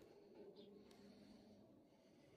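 Near silence: a faint steady low hum fading out over the first second and a half.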